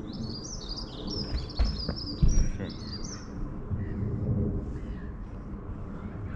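A songbird singing a quick run of high, falling chirps through the first half, over a steady low rumble on the microphone. Two dull thumps come about one and a half and two and a quarter seconds in.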